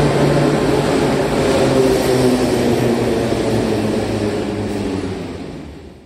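Metro train running along the station platform: a steady rumble with a low motor hum. It eases off and fades out near the end.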